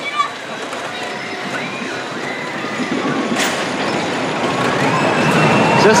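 Steel junior roller coaster train rolling along its track, a steady rumble building gradually, with distant voices of people around it.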